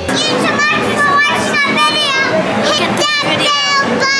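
Young children's high-pitched voices shouting and squealing in short, excited bursts.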